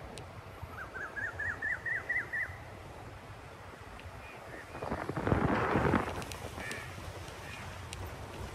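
Birds calling: a quick run of about eight high chirps in the first couple of seconds, then a loud, rough call lasting about a second, about five seconds in. Under them runs a steady low rumble of wind and road noise from the moving camera.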